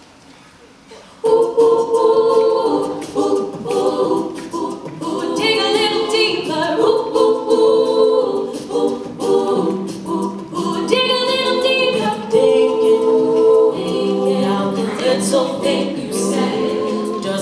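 All-female a cappella group singing in close layered harmony, entering together suddenly about a second in after a brief hush. The sustained chords shift every second or so, with higher voices joining partway through.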